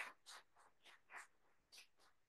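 Near silence broken by a handful of faint, scattered claps as applause dies away.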